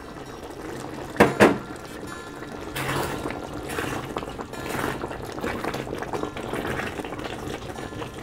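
Thick curry gravy with meatballs simmering in a pot and being stirred with a silicone spatula, a wet bubbling and sloshing that comes in uneven surges. Two sharp knocks sound a little over a second in.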